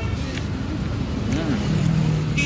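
Road traffic: a motor vehicle engine running, a steady low rumble, with a steadier hum coming in near the end.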